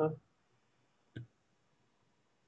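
The end of a spoken word, then a single short click about a second in, over faint room tone.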